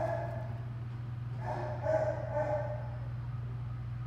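A frightened brindle boxer–Plott hound mix whining softly, a brief whine at the start and a longer one about a second and a half in, over a steady low hum.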